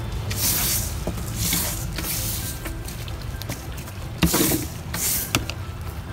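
Stiff-bristled hand scrub brush sweeping loose potting soil and root debris across a plastic tarp, in about five short brushing strokes.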